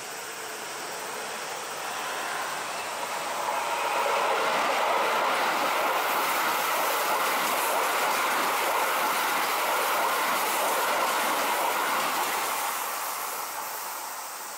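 A Keikyu 1000-series electric commuter train approaching and running past close by on the track. It grows louder over the first four seconds, stays loud and steady while the cars pass, and eases off near the end.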